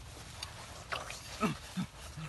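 A few short, low vocal grunts, one falling in pitch, from about a second in, with a faint click or two before them.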